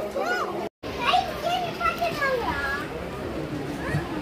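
People talking, with fairly high-pitched voices among them. The sound cuts out completely for an instant just before a second in, then the talking carries on.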